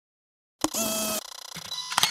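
Electronic logo-sting sound effect: dead silence for about half a second, then a sudden burst of steady synthetic beeping tones that changes to a higher, thinner set of tones about halfway through.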